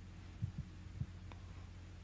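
Steady low electrical hum from the microphone and sound system, with three soft low thumps between about half a second and a second in.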